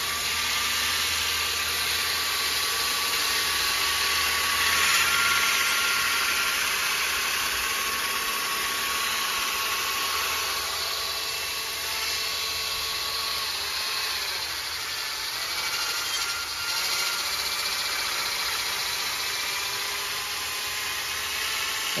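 Cordless drill spinning a cedar arrow shaft while 100-grit garnet sandpaper rubs along it with light pressure: a steady motor whine under the continuous hiss of sanding, smoothing the shaft round.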